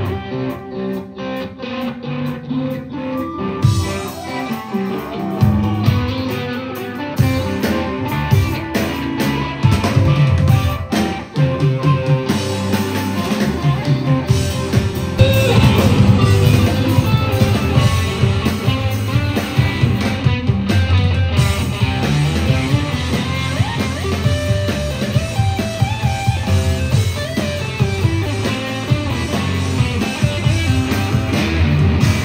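Live instrumental rock band playing: electric guitar lines over bass guitar and drum kit, heard from the audience. It starts sparse and builds to a fuller, louder passage about halfway.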